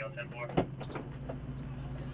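A steady low hum from the idling patrol car under police radio voices, with one sharp bang about half a second in, the loudest sound here, followed by a few lighter knocks.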